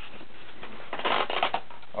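Close rustling and scraping handling noise, a cluster of short bursts about a second in, over a steady hiss.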